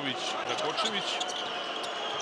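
A basketball being dribbled on a hardwood arena court, bouncing repeatedly over the noise of a large crowd.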